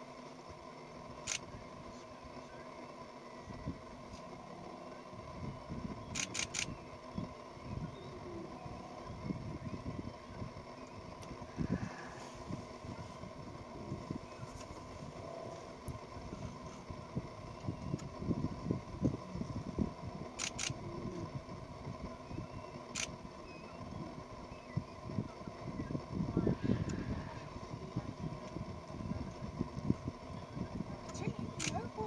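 Camera shutters firing: single clicks and quick runs of two or three frames, over a low, uneven rumble.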